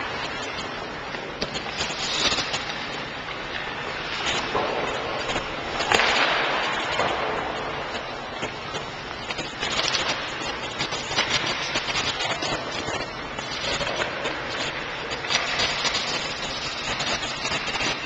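Ice-rink hockey sounds: skate blades scraping the ice in bursts of hiss, with sticks and pucks clacking in many short sharp clicks over a steady background noise.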